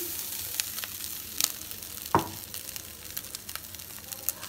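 Shredded boiled chicken tipped into a hot metal pan and sizzling steadily. A few light clicks and one sharper knock come about two seconds in.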